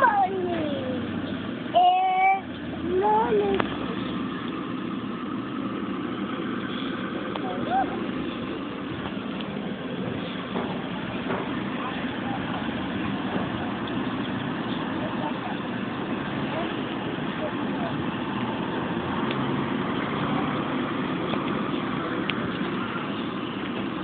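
Steady noise of city street traffic throughout. In the first few seconds a young child's high voice makes a few short sliding calls.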